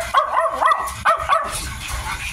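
Miniature dachshund puppies, about 55 days old, yipping in quick short high calls, about six in two seconds, each rising then falling in pitch.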